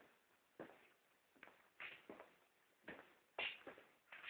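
Faint, irregular knocks and scuffs, about eight short ones spread through an otherwise near-silent stretch.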